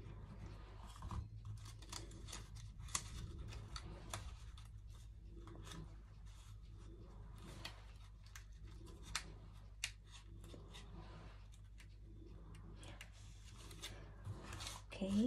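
Faint crinkling and rustling of paper being pressed and shaped by hand, with scattered small clicks and a steady low hum underneath.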